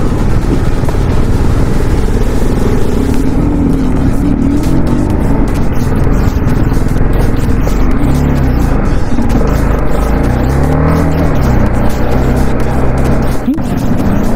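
TVS Apache RR310 single-cylinder motorcycle engine running at low speed, its pitch rising and falling as the rider works the throttle, with rushing wind noise. Background music plays underneath.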